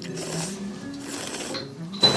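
Close-up wet eating sounds of spicy ramen noodles being slurped, twice, at the start and near the end, over light background music.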